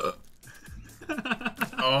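A man burping after gulping down a thick blended drink, with another man's voice near the end.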